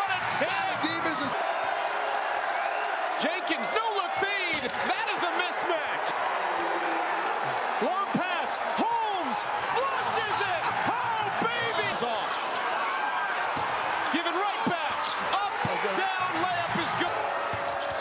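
Basketball game sound on a hardwood court: the ball bouncing and many short sneaker squeaks, over steady arena crowd noise.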